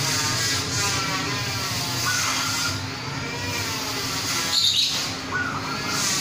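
Caged zebra doves (perkutut) calling: short coos about two seconds in and again near the end, with a louder, higher call just before the second, over a steady background hum.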